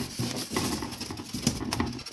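Hands handling the polystyrene-foam lid of a Teplusha Lux 72 incubator: continuous rustling and scraping of the foam, with a few small knocks.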